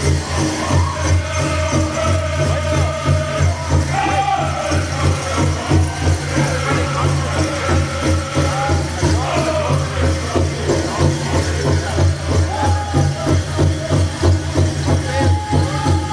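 Powwow drum group singing a fancy dance song, high wavering voices over a fast, even beat on the big drum, with dancers' leg bells jingling.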